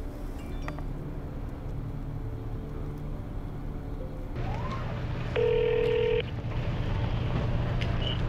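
Steady low hum inside a parked car. About five and a half seconds in, a loud phone tone holds for under a second as a call comes through.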